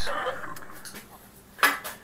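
A short metallic clatter from the tile wet saw's head being brought down onto the tile, fading out over about a second and a half, then a brief sharp rustle near the end.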